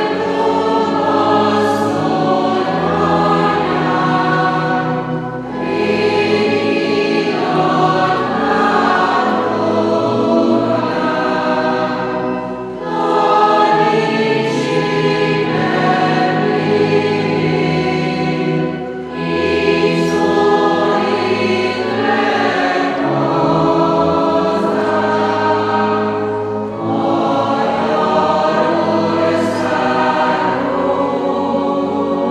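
Church congregation singing a hymn together in unison phrases of about six to seven seconds each, with a brief pause for breath between phrases.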